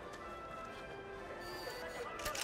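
Film score music: quiet, sustained held notes at several pitches, with a higher tone entering near the end.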